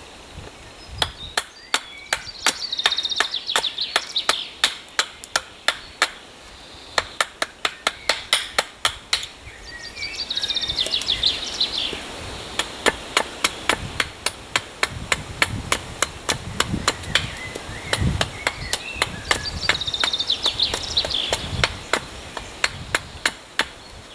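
A wooden baton knocking a knife down into the top of a log round, sharp knocks about three a second in long runs, with a short pause just before the middle. A bird sings a short phrase three times over the knocking.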